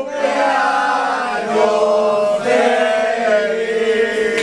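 A small group of people singing a birthday song together unaccompanied, several voices holding long notes.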